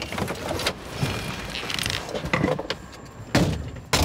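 Car door unlatching and opening with rustling and a light jingle, then a loud thump about three and a half seconds in as a car door is slammed shut.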